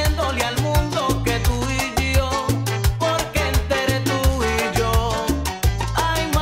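Salsa romántica music in an instrumental passage without singing: a steady percussion rhythm over a stop-start bass line, with melodic lines above.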